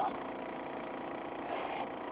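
A car engine idling, heard from inside the cabin as a steady, even hum.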